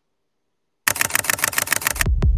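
Silence for nearly a second, then a fast run of sharp electronic clicks, about twelve a second, that opens the closing music's transition effect.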